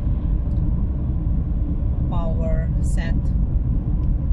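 Steady low road and engine rumble of a moving car, heard from inside the car, with a short burst of speech about two seconds in.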